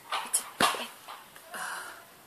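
A dog giving a few short barks and yips, the loudest a little over half a second in.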